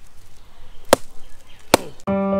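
Two sharp chopping strikes, about a second in and again near the end, as a blade splits open sprouted palmyra palm seeds to reach the kernel.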